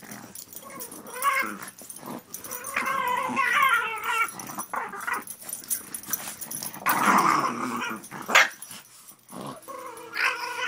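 Two Boston terriers growling in play as they tug and wrestle over a rope toy, in several bursts of higher-pitched, wavering growls, with one short sharp bark a little past eight seconds that is the loudest sound.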